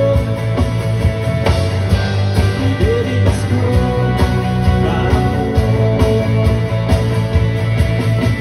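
Live rock band playing through a PA: a drum kit keeps a steady beat under electric and acoustic guitars, with a couple of bending guitar notes in the middle.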